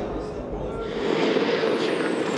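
V8 touring cars running on the circuit, heard as a steady engine drone under general noise. The low rumble drops out about a second in.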